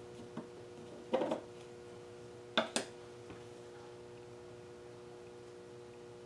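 A few light taps and clicks of a wooden craft stick against a small plastic cup as cotton string is pushed down into paint: a short cluster about a second in and two sharp clicks a moment later, over a faint steady hum.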